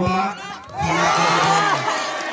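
A large crowd of spectators bursts into cheering and shouting about a second in, many voices rising together, in reaction to a penalty kick.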